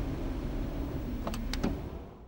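Low rumbling car-cabin noise, with three short high squeaks close together a little past the middle, fading away near the end.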